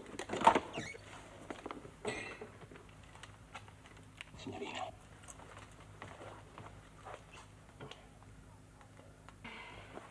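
Footsteps, knocks and shuffling as people come through a door into a room, with a short sharp clatter about half a second in and softer knocks after it, over a faint low hum.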